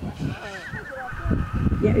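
A horse whinnying: one long, high call of about a second and a half that quavers at first, then holds and drops slightly in pitch.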